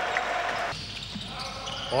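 Court sound of a basketball game in a large gym: a ball bouncing on the hardwood floor and faint voices. The background drops quieter about three-quarters of a second in.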